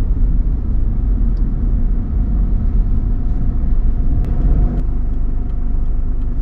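Steady road and engine rumble inside the cabin of a Mitsubishi Pajero (Montero) SUV on the move, with a faint steady hum over it. A couple of light clicks sound about four to five seconds in.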